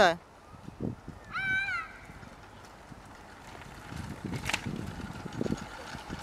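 A toddler gives a short, high-pitched squeal about a second and a half in. Later comes a low rolling rumble with a click, from stroller wheels on asphalt.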